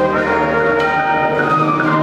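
High school concert band of brass, woodwinds and percussion playing sustained chords, loud and steady, with the notes changing partway through, in a reverberant gymnasium.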